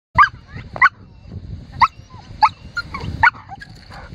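Dog on a leash giving five sharp, high-pitched yips in about four seconds, with softer whines between them: impatient, frustrated barking at being held back from chasing the lure.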